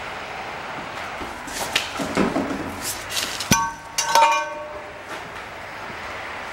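Metal knocking against metal: some scraping and rustling, then a sharp ringing clank about three and a half seconds in, followed half a second later by a clatter of several ringing clanks.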